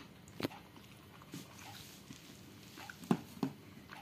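A few short, sharp smacks and clicks of eating with the fingers: mouth and wet-hand sounds over soaked rice. The loudest comes about three seconds in, with a second just after.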